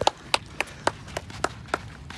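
Hand clapping by one or two people: sharp, evenly spaced claps about three or four a second, getting weaker and stopping near the end.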